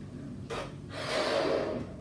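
A person blowing up a balloon by mouth: a short sharp breath about half a second in, then a longer, louder breath blown into the balloon from about a second in.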